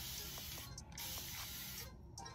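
Spray bottle misting water onto a section of hair: two long sprays, each just under a second, with a brief break between them.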